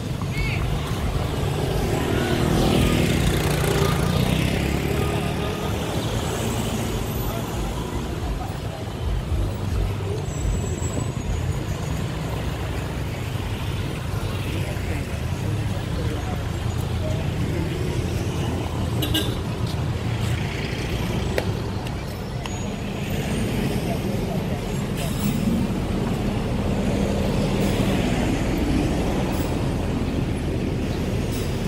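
Road traffic on a busy city street: cars and pickup-truck taxis passing one after another at low speed, engines running under a steady hum, with several louder passes.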